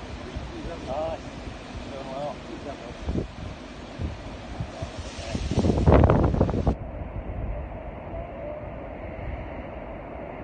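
Wind buffeting a phone microphone over rough surf breaking against rocks, with a louder rush of noise about five to six seconds in.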